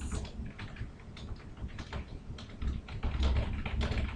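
Typing on a computer keyboard: an uneven run of key clicks, busiest in the second half.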